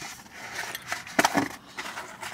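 Chewing a bite of crunchy pepperoni pizza close to the microphone: scattered crisp crunches and wet mouth clicks, bunched in the second half.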